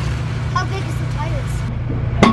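A steady low motor hum, with faint voices in the background.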